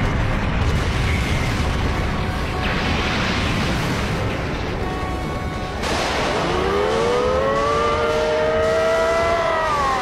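Anime battle soundtrack: a dense, loud rumble of booms and crashing debris over music. From about six seconds in, a long pitched tone rises slowly and holds for about three seconds as two sword fighters clash.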